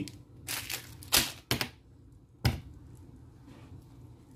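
A small plastic candy wrapper crinkling, four short crackly rustles within the first two and a half seconds.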